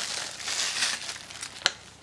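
Clear plastic shrink-wrap crinkling as it is peeled off a steelbook Blu-ray case, with one sharp click about one and a half seconds in.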